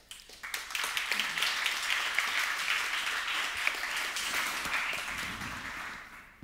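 Audience applauding: the clapping builds up within the first second, holds steady, then fades out near the end.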